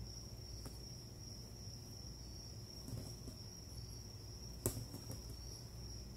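Crickets chirping in a steady high trill, with one sharp smack about three-quarters of the way in, typical of a punch landing.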